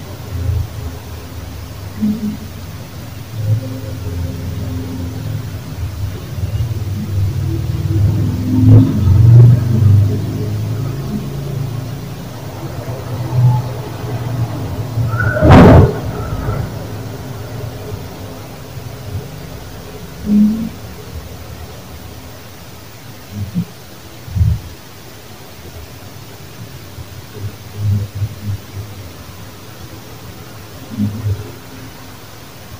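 Low rumbling background noise from a phone voice recording in an empty building, with scattered dull thumps, a single sharp crack about halfway through, and a few short murmur-like sounds that are taken for strange voices.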